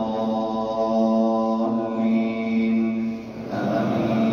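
A man reciting the Quran in a melodic chant, holding long drawn-out notes. The note changes partway through, and he breaks briefly for breath near the end before starting a new phrase.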